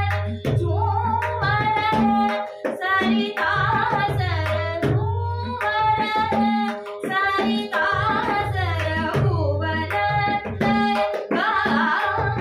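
A woman singing a natyageet in raga Todi with tabla accompaniment in ektal: crisp strokes on the right-hand drum over the deep, sustained left-hand bayan tone, which bends in pitch.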